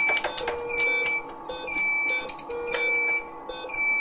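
Medical equipment alarms beeping during an air-in-circuit emergency on an ECMO circuit. A high beep repeats about once a second over a lower tone that sounds on and off. There are a few sharp clicks of hands handling tubing and connectors about half a second in.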